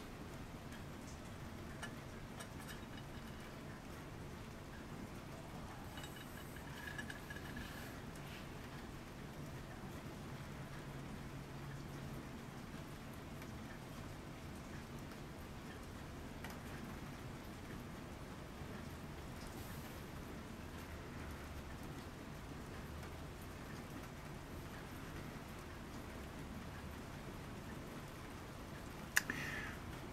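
Faint, steady rain falling outside, heard from indoors.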